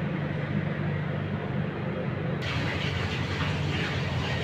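Steady low mechanical hum of kitchen machinery. About two and a half seconds in, a steady hiss suddenly joins it.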